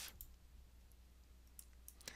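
Near silence with a few faint computer mouse clicks, one near the start and two close together near the end, over a low steady hum.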